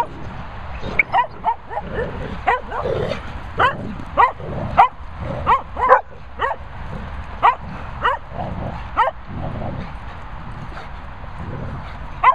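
Dogs playing rough together, with many short, high yips and barks falling in pitch, coming irregularly a few times a second.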